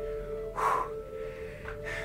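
One short, breathy gasp or exhale about half a second in, from a man climbing a steep incline, over quiet background music with held tones.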